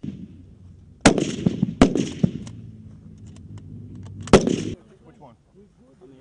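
Bolt-action sniper rifles firing on a range: three loud sharp shots about one, two and four and a half seconds in, with fainter shots between them from other rifles on the line.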